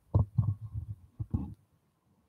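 Handling noise from a handheld phone microphone as the camera is moved: a run of dull, low thumps and rubbing that stops abruptly about three-quarters of the way through.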